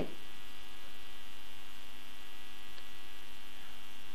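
A steady electrical hum, several fixed tones sounding together at an even level, with nothing else heard.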